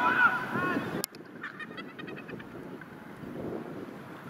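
Players' shouts and calls carrying across an open sports field, with wind on the microphone. About a second in, the sound cuts off abruptly to quieter outdoor noise with faint distant voices.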